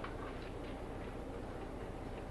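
A few faint, scattered clicks and light taps of objects being handled on a table, over a steady low hum.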